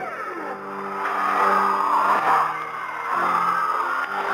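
Music heard over a shortwave radio signal: sustained low notes that change pitch about once a second, half buried in static hiss with sweeping, warbling interference whistles and fading.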